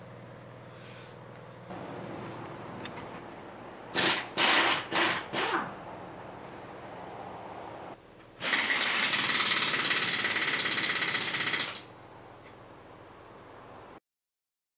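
Pneumatic impact wrench (air gun) on a skid steer's wheel lug nuts: a few short bursts about four seconds in, then one loud, steady run of about three seconds past the middle.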